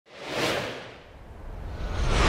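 Whoosh sound effects for an animated logo reveal. One swell peaks about half a second in and fades, and a second builds near the end.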